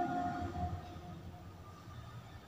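The last held note of a woman's melodic Qur'an recitation fades out within the first second, leaving a low, steady room rumble.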